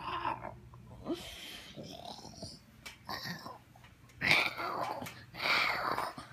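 A person's breathy, wheezing laughter in several bursts, loudest about four seconds in.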